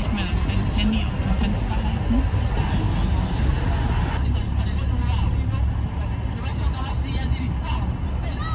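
Car driving slowly, heard from inside the cabin as a steady low rumble, with indistinct voices and street babble behind it.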